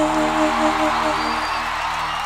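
A live band's final sustained chord ringing out and slowly fading, with crowd noise underneath.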